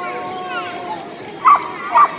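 A dog barking twice, about half a second apart near the end, over people talking.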